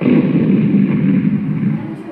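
A loud rumbling blast sound effect in a recorded dance soundtrack, starting abruptly and dying away near the end.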